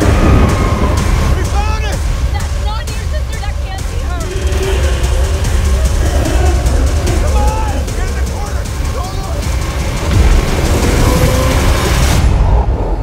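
Horror-trailer sound design: a heavy low rumble under rapid stuttering hits and flicker clicks, with frightened screams and cries rising and falling over it. The sound swells louder near the end.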